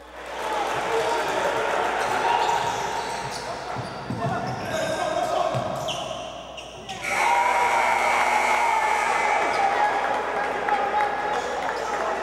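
Live sound of an indoor basketball game: a ball bouncing on the hardwood court amid crowd and player voices echoing in the arena hall. About seven seconds in there is a brief dip, and then it comes back louder.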